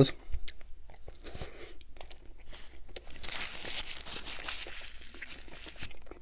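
Close-miked eating sounds: soft chewing and small mouth clicks. About three seconds in these give way to a steady papery rustle as a paper napkin is wiped across the mouth.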